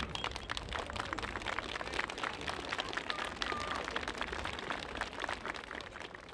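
A large outdoor crowd applauding, a dense patter of many hands clapping that eases off near the end.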